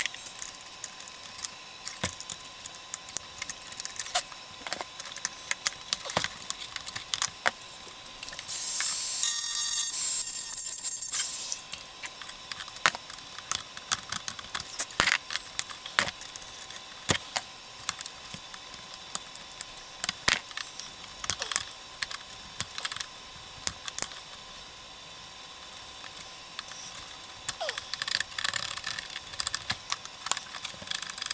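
Hard-plastic RC Jeep body and small parts being handled and worked on at a workbench: many scattered clicks, taps and light rattles of plastic and small tools. About nine seconds in, a loud hiss lasts about three seconds.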